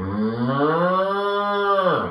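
A cow mooing: one long moo that rises in pitch, holds, and drops away as it ends.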